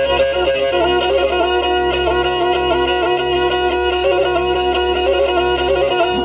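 Black Sea kemençe playing an ornamented highland folk tune with a drone-like held note under the melody. This is an instrumental passage between sung lines.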